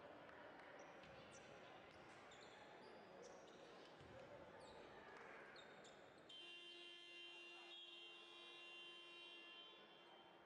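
Faint sounds of a basketball game in a hall: sneakers squeaking in short chirps on the court over distant voices, then from about six seconds in a steady held tone of several pitches, like a horn, lasting about three seconds.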